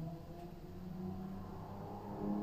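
Quiet room tone with a low steady hum.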